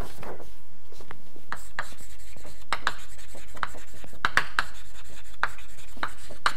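Chalk writing on a blackboard: a string of short, irregular taps and scrapes as words are written, starting about a second in.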